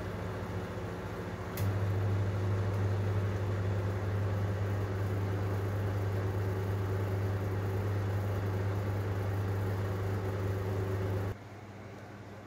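Steady electric motor hum with fan air noise, typical of a kitchen range hood fan running over the stove. It gets louder about a second and a half in and cuts off suddenly near the end.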